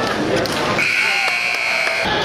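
An electronic buzzer sounds once, a steady high tone lasting about a second, starting a little under a second in, over people talking.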